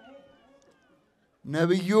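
A man preaching in a drawn-out, rising and falling voice: he pauses for about a second and a half, then his voice comes back near the end.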